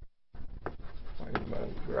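Chalk writing on a blackboard, with two sharp taps of the chalk about a second and a second and a half in. The sound cuts out completely for a moment at the very start.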